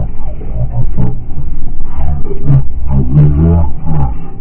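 A car sliding off a snowy highway into the deep snow beside it, heard from inside: a loud low rumbling and knocking from the car, with a drawn-out low roaring cry over it that grows louder from about two seconds in.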